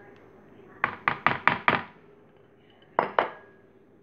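Kitchenware tapping: five quick, sharp clinks in a row about a second in, then two more near the end, as the dry herb-and-spice mix is knocked out over the chicken in the bowl.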